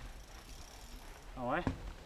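A person's short vocal sound about one and a half seconds in, over a low steady outdoor background, with a few faint clicks near the end.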